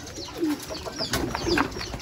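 Racing pigeons in a loft cooing, many short low coos overlapping one another, with a few brief higher chirps among them.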